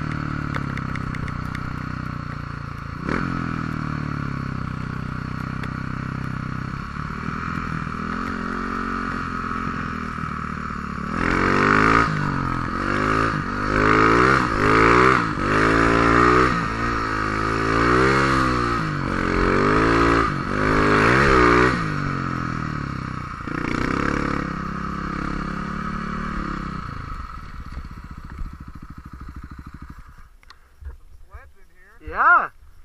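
Snow bike engine running under load through deep snow, steady at first, then revving up and down in a string of surges through the middle. It eases off and drops low near the end.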